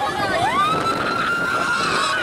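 Riders screaming on a swinging pendulum ride: one long scream rises about half a second in and is held, with other shorter cries around it, over a rush of wind noise from the moving ride.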